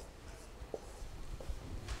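Faint marker writing on a whiteboard, a few short strokes.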